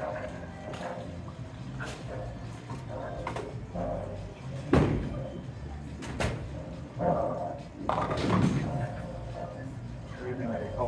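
Ten-pin bowling: a sharp thud of a bowling ball hitting the lane about five seconds in, then a clattering crash of pins later on, over the steady din of a bowling alley.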